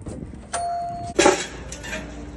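A store door's entry chime sounds one steady electronic tone for about half a second as the door is opened. Right after it comes a loud, short clatter, the loudest thing here.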